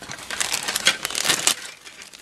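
Clear plastic parts bag crinkling as it is handled and lifted out of a cardboard model-kit box: a quick run of crackles that thins out near the end.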